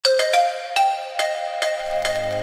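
Intro music: a short melody of separate struck, ringing notes, about six in two seconds, with a low bass coming in near the end.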